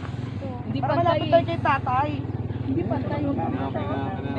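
A person talking in short phrases over a steady low mechanical hum, like a running engine, that lasts throughout.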